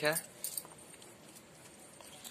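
A spoon clinking faintly against a metal dish while someone eats: one sharp click about half a second in, then a few quiet small ticks.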